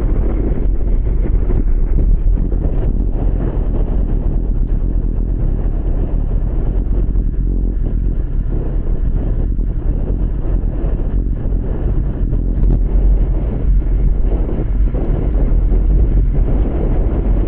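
Wind buffeting the microphone of a camera riding on a racing bicycle at speed: a steady, low noise with no clear individual events.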